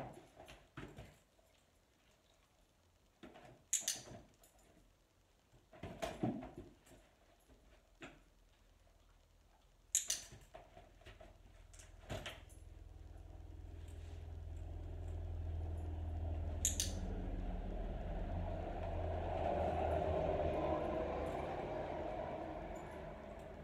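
Three sharp, single clicks of a dog-training clicker marking the dog's moves, among soft knocks and scuffles of the dog's paws in and around a fabric suitcase. In the second half a low rumble slowly swells and becomes the loudest sound.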